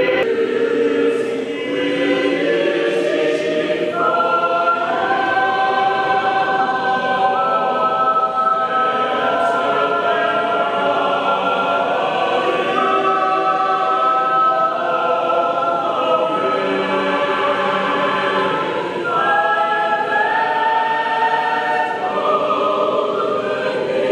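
Mixed choir of men's and women's voices singing in parts, holding long sustained chords that move to new chords every few seconds.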